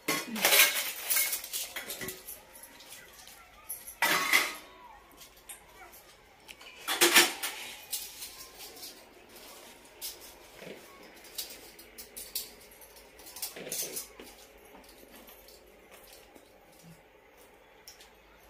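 Stainless-steel kitchen utensils, plates, tumblers and small pots, clinking and clattering against each other as they are handled and put away. Irregular knocks with a short metallic ring, the loudest clatters about four and seven seconds in.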